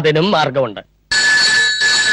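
A telephone ringing: one ring lasting about a second and a half, starting just after a second in.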